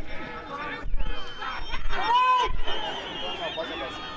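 Speech only: men talking and calling out, with a louder drawn-out shout about two seconds in.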